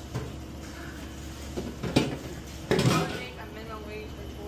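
Light clinks and knocks of stainless-steel food pans and utensils at a sandwich prep counter, a few separate taps with the sharpest about halfway through. A short bit of voice comes shortly after.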